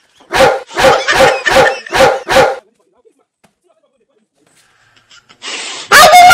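A dog barking about six times in quick, even succession.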